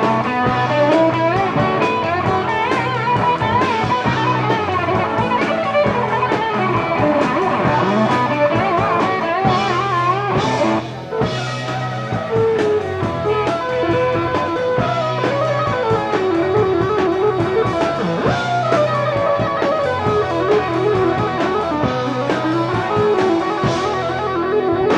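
Live rock band playing an instrumental break with no singing: an electric guitar plays a lead line with bent notes over bass and a drum kit.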